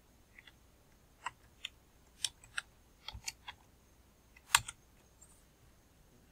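Irregular single keystrokes on a computer keyboard as a phone number is typed, about ten separate clicks with uneven pauses, the loudest about four and a half seconds in.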